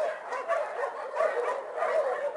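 Dogs barking and yipping in repeated short barks, about three in two seconds.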